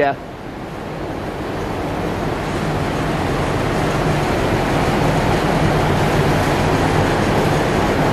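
Steady rushing air of a large shop fan in a dyno bay. It grows louder over the first few seconds, then holds steady, with a faint low hum underneath.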